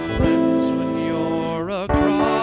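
Song music: held pitched notes with a plucked-string accompaniment, one note wavering just before a brief break near the end.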